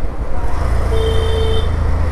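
Bajaj CT 125X's single-cylinder engine running in slow street traffic, with surrounding road noise. A brief steady beep sounds about a second in and lasts under a second.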